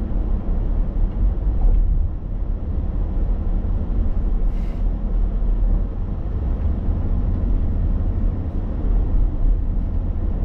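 Steady low rumble of a car driving, heard from inside the cabin: engine and tyre noise. A brief faint high-pitched sound comes about halfway through.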